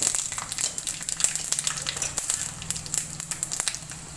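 Spices sizzling in hot oil in an aluminium kadai, a steady hiss with many small sharp crackles and pops.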